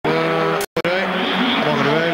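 A voice with long, drawn-out notes that waver in pitch, cut by a brief dropout just under a second in.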